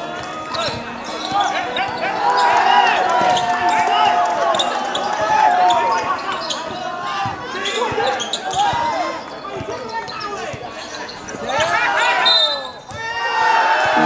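Basketball game play: a ball bouncing on the court, with players' voices and shouts over it.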